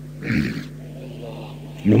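A man's preaching voice: a short, forceful vocal sound about a quarter second in, then his speech picks up again near the end. A steady low hum runs beneath it.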